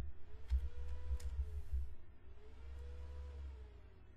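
A few computer keyboard keystrokes and clicks, scattered through the first half, over low desk thuds, then quieter.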